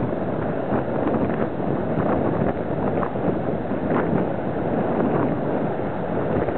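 Strong coastal wind blowing across the microphone: a steady, loud rush of wind noise that swells and dips slightly with the gusts.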